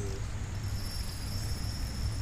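A steady, high-pitched insect trill over a low, even rumble.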